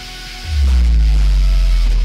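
Advertisement background music. About half a second in, a loud deep bass note comes in and holds, with a falling tone above it.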